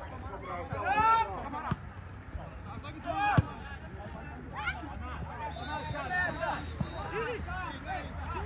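Players and spectators shouting across an outdoor football pitch during open play, with one sharp thud of a ball being kicked about three and a half seconds in.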